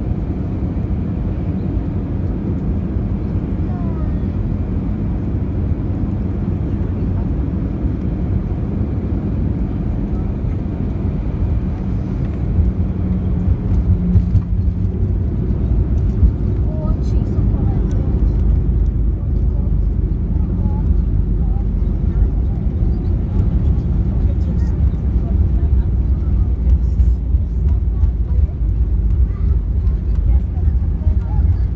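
Cabin noise of an Airbus A320 airliner landing: a steady low rumble of engines and airflow, then a few jolts of touchdown about halfway through. After that the rumble of the landing roll on the wet runway runs louder.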